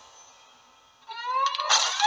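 Background music fades out. About a second in, a pitched sound with several overtones sweeps upward, and a loud, noisy burst follows near the end.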